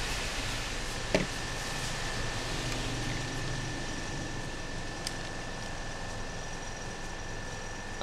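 Steady fan-like rushing noise with a faint, constant high whine through it, and one light click about a second in.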